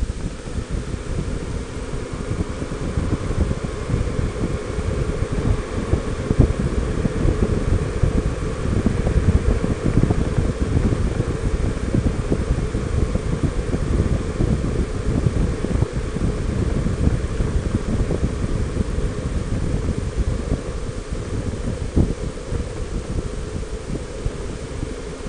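Steady wind buffeting on the microphone of a Honda Gold Wing 1800 motorcycle moving at road speed, with road noise from the motorcycle beneath it.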